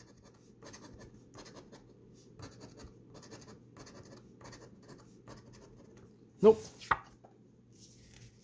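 A coin scraping the coating off a scratch-off lottery ticket in quiet, repeated short strokes, roughly two a second.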